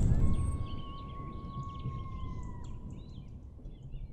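Nature ambience with scattered bird chirps and a long, steady whistle-like tone that dips slightly and stops about two and a half seconds in, over a low rumble dying away in the first second.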